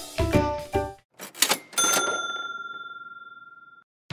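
Logo-intro jingle: a few bright plucked melodic notes end about a second in, then a short swish and a single bell-like ding that rings for about two seconds before cutting off.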